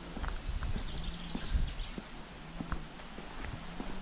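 Footsteps walking along an asphalt road: a series of light taps and scuffs at walking pace over a low rumble.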